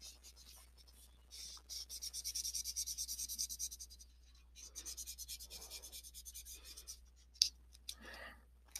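Yellow felt-tip marker colouring in on paper: quick, even back-and-forth scribbling strokes for about two seconds, then a second, slower spell of strokes. A short sharp tap near the end.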